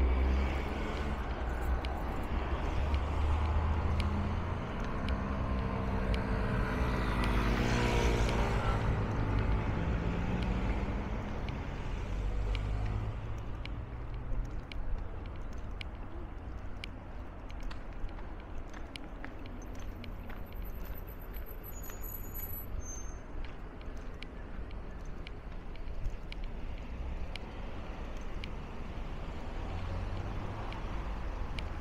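The engine of a semi-trailer truck running close by, a heavy low rumble with an engine note that rises and falls over the first dozen seconds. It then fades into a steady hum of road traffic.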